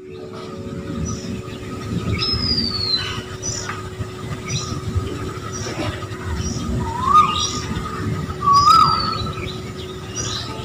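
Wild birds calling: short high chirps repeating every second or so, two clear falling whistles, and two louder swooping whistles near the end, over a steady hum and a low rumbling background.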